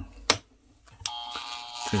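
A click, then about a second in a small corded electric rotary tool switches on and runs with a steady whine.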